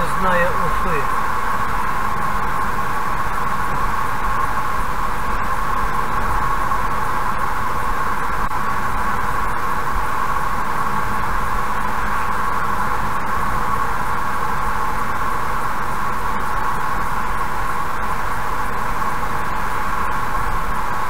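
Steady road and tyre noise of a car cruising at about 85 km/h, heard from inside the cabin.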